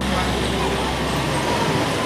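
Background music cuts off at the start, and steady outdoor location noise with a low hum takes over, with faint voices in the distance.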